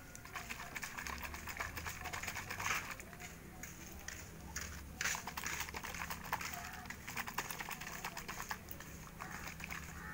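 Homemade plastic-bottle baby rattle being shaken, its loose filling clattering against the plastic in fast, dense rattles with a couple of louder clacks.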